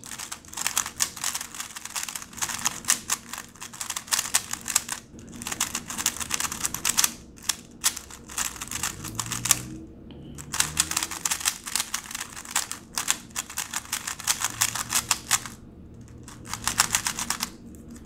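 GAN 354 M magnetic 3x3 speedcube being turned fast by hand: rapid runs of plastic clicking and clacking as the layers turn, broken by a few short pauses. The cube is still dry and loose, with no lube in it yet.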